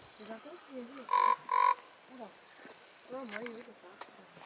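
Common raven giving two short calls in quick succession, about half a second apart, a little over a second in.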